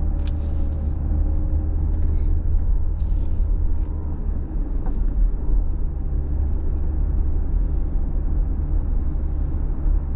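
Steady low rumble of road and engine noise heard inside a moving car, with a few faint short ticks.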